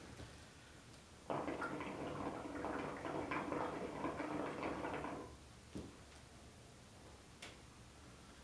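Water in the glass base of an Elmas Nargile 632 Turkish hookah bubbling steadily for about four seconds as smoke is drawn through it, starting about a second in. Two faint ticks follow.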